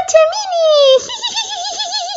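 High-pitched, pitched-up cartoon voice making wordless sounds: a long falling call in the first second, then a wavering hum that trails off near the end.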